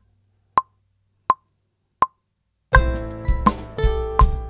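Logic Pro's metronome counting in with three clicks a beat apart at 83 BPM. About three-quarters of the way through, recording starts: a backing track with drums begins, the metronome keeps clicking on the beat, and synth notes played on a Launchpad X pad controller through Logic's Retro Synth join in.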